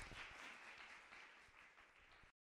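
Faint audience applause, fading out.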